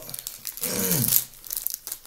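Plastic wrapper crinkling and tearing as it is handled and pulled open by hand, with a short falling hum of voice about two-thirds of a second in.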